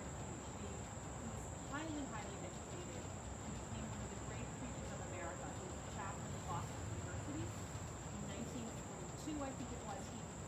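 A steady, high-pitched insect drone from crickets, unbroken throughout, with a faint voice speaking now and then beneath it.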